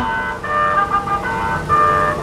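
Decap dance organ: its rhythmic tune with drums breaks off, then it sounds sustained reedy chords in three short held blocks.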